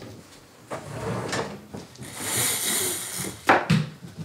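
Someone moving about a bedroom, with soft rustling, then a hiss lasting about a second from two seconds in. Two sharp knocks follow near the end, a drawer or cupboard door banging shut.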